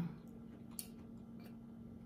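Faint closed-mouth chewing of food, with one sharp small click a little under a second in and a few lighter ticks, over a steady low hum.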